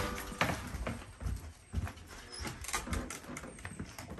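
Footsteps on a wooden porch floor and wooden steps: irregular hollow knocks on the boards, a few a second.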